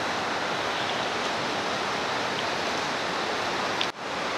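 Steady rushing of flowing water, an even roar with no rhythm, dipping briefly just before the end.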